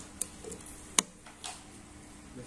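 A few light clicks from handling a PCP air rifle between shots, the sharpest about halfway through.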